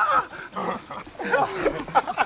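A dog whimpering and yelping in short, high, wavering cries.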